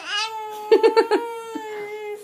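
A high-pitched voice holds one long note, with a quick run of about four 'hu' pulses around the middle.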